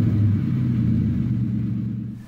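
Car engine that has just started, running with a steady low rumble that dies away near the end.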